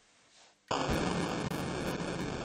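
A dense wall of heavily distorted, noisy sound from the electric guitar and effects rig cuts in suddenly a little under a second in and holds steady and loud.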